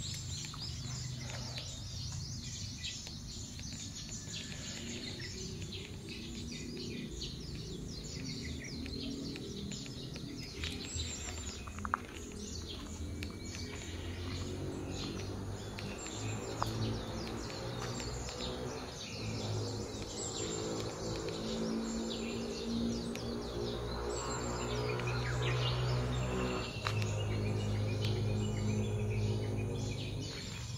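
Birds chirping and twittering over outdoor ambience, with soft low sustained music underneath that grows slightly louder in the second half.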